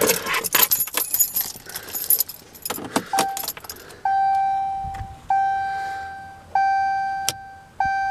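Keys jangling and clicking at the steering column of a 2016 Ram 1500. About three seconds in, the truck's dashboard warning chime starts: a single-pitched ding repeating a little more than once a second, each one fading away.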